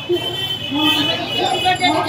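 People's voices over the steady noise of road traffic on a busy street.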